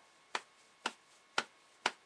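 A steady ticking: four sharp clicks, evenly spaced about two a second.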